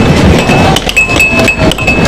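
Air hockey puck and mallets clacking against each other and the table's rails: several sharp hard-plastic hits in quick, uneven succession, over short electronic beeps.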